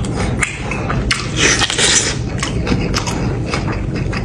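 Close-up eating sounds: a man chewing and slurping hot noodles and fried egg, with small wet mouth clicks and chopsticks knocking the bowl. One longer airy slurp comes between about one and two seconds in.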